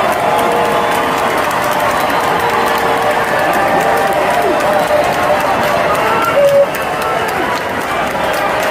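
Ballpark crowd chatter: many overlapping voices talking at once in the stands, with a brief louder call about six and a half seconds in.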